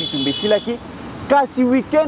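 A man's voice speaking, with a short pause about a second in; a faint steady high tone is heard behind it for the first half second.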